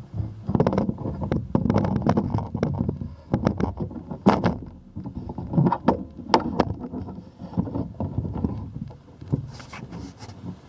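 Handling noise from a handheld camera being carried while walking: irregular knocks, rubbing and rumble on the microphone, mixed with footsteps on concrete.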